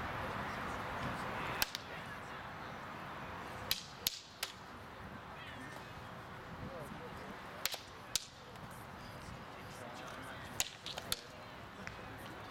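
Practice longswords clashing in a sparring bout: sharp clacks of blade on blade in brief exchanges, one strike about a second and a half in, then three pairs of strikes each under half a second apart, a few seconds between exchanges.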